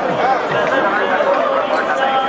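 Crowd chatter: many people talking at once, their voices overlapping into a steady babble.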